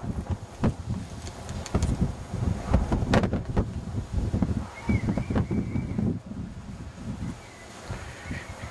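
Wind buffeting the camera microphone in uneven gusts, a low rumble with a few knocks, and a thin high tone held for about a second midway.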